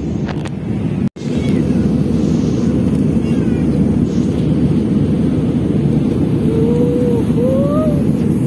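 Steady cabin noise of a jet airliner in cruise: a deep, even rush of engine and airflow. The sound cuts out for an instant about a second in, then resumes unchanged.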